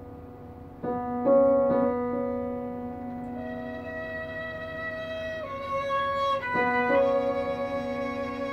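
Violin and grand piano playing a slow classical piece: a held piano chord fades, then the violin enters about a second in with a melody of long sustained notes over the piano accompaniment.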